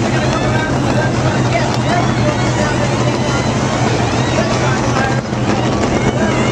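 Stock car engines droning steadily, with indistinct voices mixed in.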